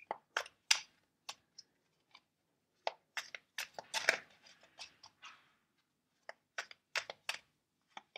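A deck of tarot cards being shuffled by hand: an irregular run of soft card snaps and rustles, with a short pause a little past the middle.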